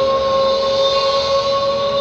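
Live concert music through a large outdoor PA, heard from within the crowd: a singer holds one long, steady high note over the band.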